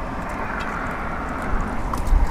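Steady wind and water noise around a small boat on choppy water, with a low rumble of wind buffeting the microphone.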